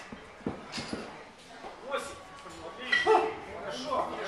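Indistinct voices in a gym: short, broken vocal sounds, the loudest about three seconds in.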